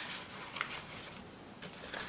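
Faint rustling of a sheet of white paper being handled and folded by hand, with a small crisp tick about half a second in.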